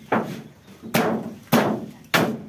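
A long steel bar striking down on an old refrigerator's sheet-metal panel as the fridge is broken up for scrap. There are three sharp hits, roughly two-thirds of a second apart, each dying away quickly.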